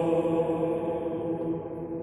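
Male voices singing Byzantine chant, holding one long steady note that grows fainter near the end.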